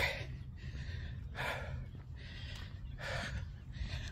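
A person breathing audibly close to the microphone, several soft breaths about a second apart, winded from a walking lap around a park. A low steady rumble runs underneath.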